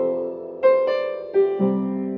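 Solo upright piano playing: a few notes and chords struck in turn, each left to ring on into the next.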